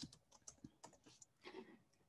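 Near silence with a few faint, scattered clicks of computer keys.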